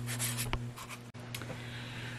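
Handling noise from a handheld camera: rubbing and scratching with a few small clicks, over a steady low hum.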